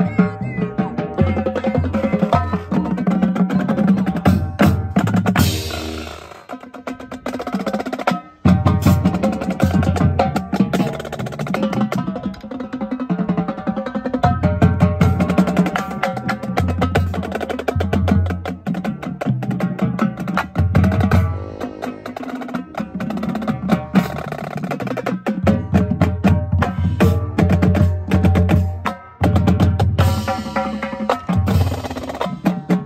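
Marching drumline playing together: Ludwig marching snares and tenor drums over pitched bass drum notes, with cymbal crashes. The playing is dense and loud, with a cymbal crash about five and a half seconds in and a brief break just after eight seconds.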